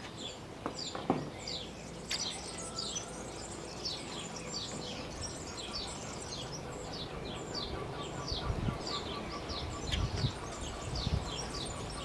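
A small bird chirping over and over: short, high, falling notes about twice a second, over a faint background hiss.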